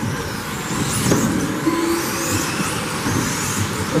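Electric 1/10-scale 2WD RC buggies with 17.5-turn brushless motors racing on a carpet track: high-pitched motor whine rising and falling as they accelerate and brake, over a steady rush of tyre and track noise.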